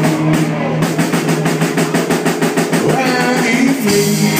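Live rock band playing an instrumental passage on drum kit, electric guitars and bass, with the drums hitting a fast, even run of strokes through the middle of the passage.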